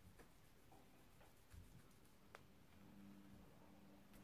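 Near silence: room tone, with a few faint small clicks.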